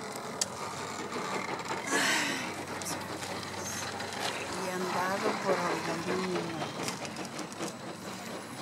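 Faint, indistinct voices talking in the background over a steady noisy hiss, with a few light clicks.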